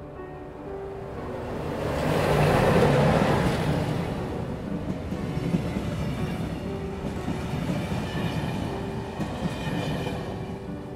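Electric passenger train approaching and passing close by, loudest about three seconds in as it arrives, then its carriages rolling past steadily. Soft music plays underneath.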